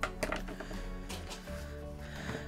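Soft background music of steady held tones, with a few short taps and rustles from handling at the desk, the loudest right at the start.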